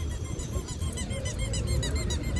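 Many small birds chirping quickly and repeatedly in high, short calls, over a low outdoor rumble.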